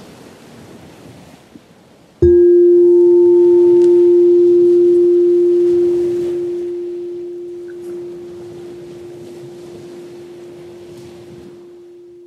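A singing bowl struck once about two seconds in, its single low ringing tone loud at first and then slowly fading, marking the close of the meditation. Under it a faint steady wash of noise.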